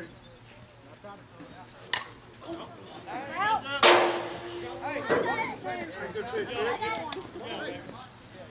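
A slowpitch softball bat hits the ball with a single sharp crack about two seconds in. Players' voices follow, shouting and calling out, with a loud burst of noise close to the microphone shortly after the hit.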